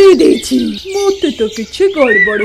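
Cartoon bird calls and chirps, mixed with a high, wavering voice-like sound.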